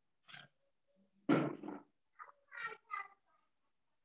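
Several short vocal calls in quick succession over an online-meeting audio feed, the second the loudest.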